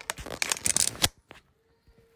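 Handling noise from a phone being gripped and moved: a quick run of rustles and clicks of fingers on the phone that stops about a second in.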